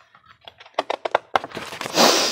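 Pages of a picture book being turned by hand: a few light taps, then paper rustling that builds near the end.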